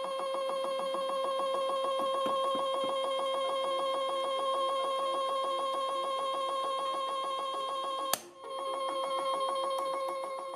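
Drive motor of a DIY universal test machine running with a steady, even-pitched whine as it slowly pulls an M3 bolt screwed directly into a PLA sample. About eight seconds in there is one sharp crack as the bolt's threads rip out of the plastic, then the motor runs on.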